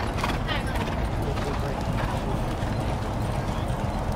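Hoofbeats of two Thoroughbreds galloping on a dirt track, passing close by and then moving off.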